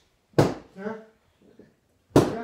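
A single sharp smack of a strike landing on a hand-held martial-arts training pad about half a second in, followed by a brief voice.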